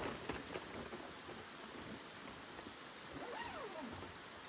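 Faint rustling and small knocks of tools and gear being handled inside a tarp-covered portable shelter. Near the end comes a short gliding tone that falls in pitch.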